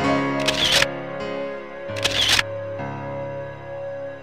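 Background keyboard music with sustained piano-like notes, broken twice by a short noisy burst about a second and a half apart.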